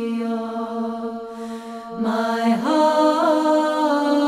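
Orthodox chant with voices singing a melody over a steady low held drone note. About a second and a half in there is a short break with a breathy hiss, and a new phrase climbs in pitch from about two seconds in.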